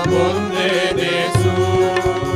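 Men's voices singing a Telugu Christian hymn together, accompanied by electronic keyboard and a steady percussion beat.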